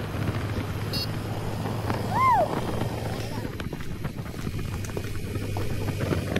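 Hero Xpulse 200 4V's single-cylinder engine running steadily under way, with wind rushing over the microphone. A brief rising-and-falling tone comes about two seconds in.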